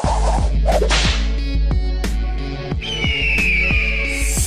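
Electronic intro music with a deep steady bass and a fast, regular beat, overlaid with sharp whip-crack and whoosh sound effects. A high whistling tone slides downward near the end.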